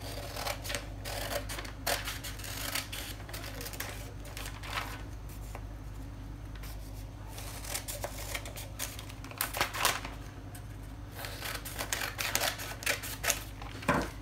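Scissors cutting through paper pattern sheets in irregular runs of snips, with the paper rustling as it is turned, over a steady low hum.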